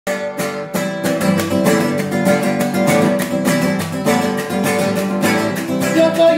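Acoustic guitar with a classical-style tie bridge, strummed briskly in a steady rhythm of chords.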